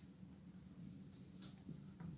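Faint strokes of a marker pen writing on a whiteboard: a few short, high-pitched scratches in the second half.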